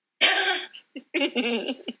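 A woman's short cough, then a burst of laughter about a second in.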